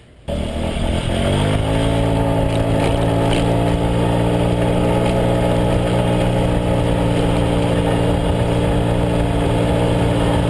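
A 2009 Honda CHF50 Metropolitan scooter's 49 cc four-stroke single-cylinder engine under way. It cuts in suddenly, rises in pitch over about the first second and a half as the scooter pulls away, then holds a steady drone at cruising revs.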